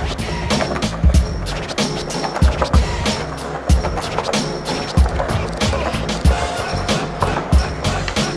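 Skateboard wheels rolling on concrete as the skater pushes along, under music with a steady beat.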